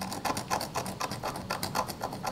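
Steel knife blade scratching a dolomite rock specimen in a rapid run of short scraping strokes, several a second: a knife scratch test on the rock.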